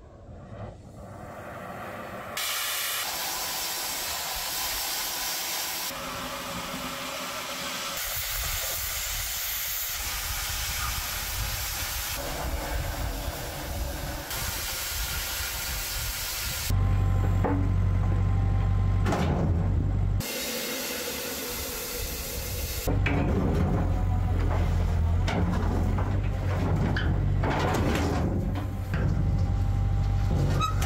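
An oxy-fuel cutting torch hisses steadily as it burns through steel, in several short edited stretches. From just past halfway the low, steady rumble of an excavator's engine running comes in. It breaks off briefly for more torch hiss, then returns.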